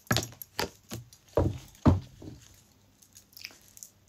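Tarot cards being shuffled and flicked out of the deck: about six sharp card snaps and slaps in the first two and a half seconds, then fainter rustling clicks.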